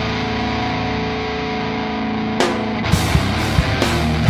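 Heavy metal band playing live: a held, distorted electric-guitar chord rings on. About two and a half seconds in there is a cymbal crash, and the drums come back in with fast, repeated kick and snare hits.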